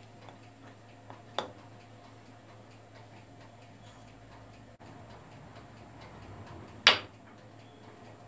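Faint steady hum with two short sharp clicks: a small one about a second and a half in, and a louder one near seven seconds.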